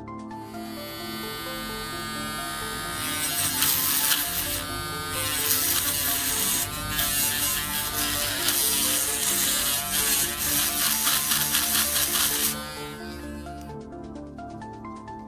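Small rotary tool spinning a fine wire brush against the spring terminals of a remote control's battery holder, scrubbing them clean. It starts quietly, runs louder from about three seconds in with a couple of brief dips where the brush lifts or the load changes, and cuts off suddenly near the end.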